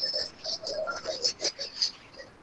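A faint, choppy voice coming through a video call, broken into short clipped fragments with no clear words.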